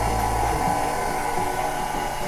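KitchenAid tilt-head stand mixer running on slow speed, its dough hook turning the dough: a steady motor hum whose deepest part drops away about half a second in.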